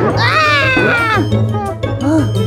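A cartoon character's high-pitched, strained, whining vocal cry, falling in pitch over about a second, over background music.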